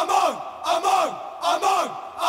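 Isolated gang-shout backing vocals: several male voices shout in unison, three times, each shout falling in pitch, in a steady chant.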